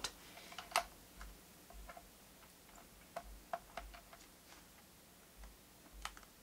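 Faint, irregular small clicks and ticks of a screwdriver working a small screw out of a laptop's hard-drive access panel.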